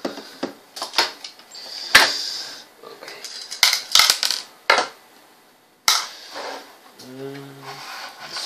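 Plastic clicks and sharp snaps as the plastic case of a small charger power supply is unscrewed, pulled apart and its circuit board handled: one snap about two seconds in, a quick cluster around the middle, another near six seconds.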